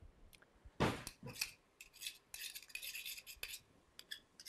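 Metal spoon scraping crushed garlic off a metal rocking garlic masher: a sharp knock about a second in, then a run of short scratchy scrapes.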